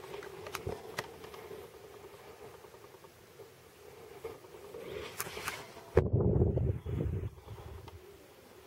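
Graphite pencil scratching on paper in short strokes, with a few light ticks. About six seconds in, a loud low rumble of handling noise lasts about a second and a half.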